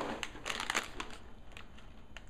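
Small clear plastic bag of Lego pieces crinkling as it is handled, in short irregular crackles.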